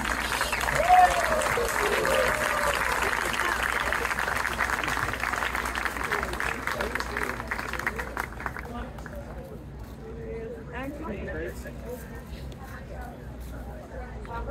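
Audience applauding, the clapping dying away about eight seconds in and leaving scattered voices and crowd chatter.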